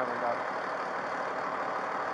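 Steady hum of idling vehicle engines, even and unchanging.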